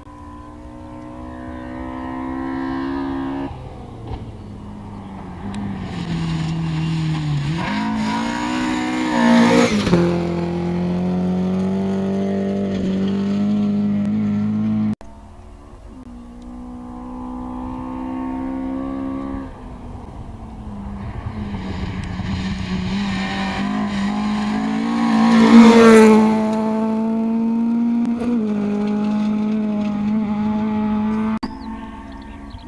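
Two rally cars, one after the other, each accelerating hard along a gravel stage through several gear changes. Each passes close by with a loud surge of engine and tyre-on-gravel noise, then drops in pitch as it pulls away. The first passes about ten seconds in; after an abrupt cut, the second passes near the end.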